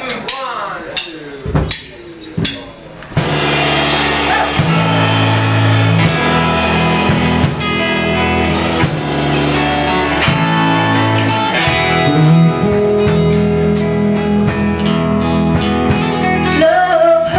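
A live unplugged band starts a song about three seconds in, with guitar chords over drums and bass notes; the first seconds are quieter and patchy.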